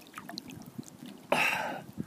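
Water moving and trickling around a person sitting in a hot spring pool, with small ticks of water and one short, louder rush of noise a little after the middle.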